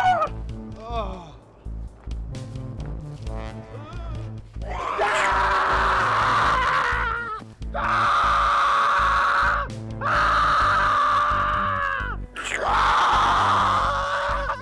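Music with a steady low bass pulse, and from about five seconds in a run of four long, loud screams, each lasting about two seconds.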